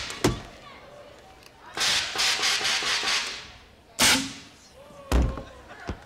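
Tennis-ball cannon and launcher shots, with balls striking the padded barriers. There is a quick pair of sharp cracks at the start, a longer burst of noise in the middle, then another sharp crack and a heavy thud near the end.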